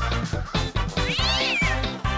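Upbeat cartoon music with a cartoon cat's meow sound effect a little past a second in, a single yowl that rises and then falls in pitch.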